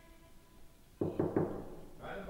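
A few quick knocks in rapid succession, about a second in, like a visitor rapping at a door.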